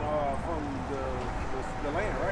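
A man's voice speaking faintly, well below the microphone speech around it, over a low steady background rumble.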